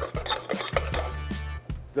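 A spoon stirring and scraping a stiff flour, butter and water dough in a metal saucepan, with repeated sharp knocks and clinks against the pan. The dough is being worked until it comes away from the side of the pan.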